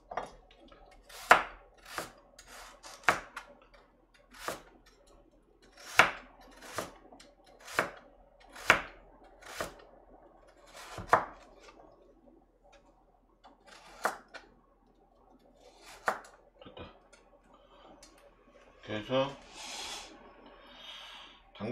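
Chef's knife chopping a carrot into chunks on a cutting board: sharp single chops at an uneven pace of about one a second, thinning out and stopping a few seconds before the end.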